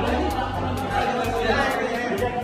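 Indistinct chatter of several voices in a crowded room, mixed with background music.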